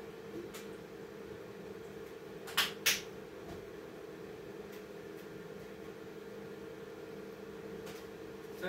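A steady machine-like hum in a small room, with two sharp clicks in quick succession about three seconds in.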